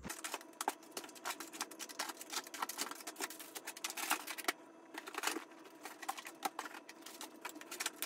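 Rapid, dense clicking and rattling of plastic-packaged clipper blades and boxed clippers being pulled out of a cardboard shipping box and set down on a table, with a brief lull about halfway through.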